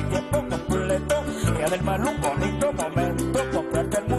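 Live Venezuelan folk music from a harp-led ensemble: harp and a small plucked string instrument over a strong, repeating bass line, with a steady quick rhythm.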